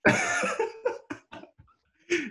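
Hearty laughter: one long breathy burst, then a few short bursts that trail off about a second in, leaving a brief quiet gap.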